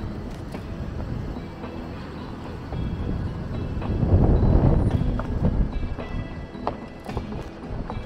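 Wind noise on the microphone, swelling loudest about four to five seconds in, with footsteps on stone paving as the camera is walked along.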